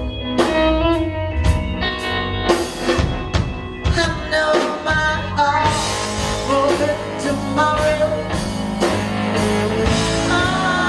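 Live blues band playing, electric guitar and drum kit with a woman singing, heard from far back in a large concert hall.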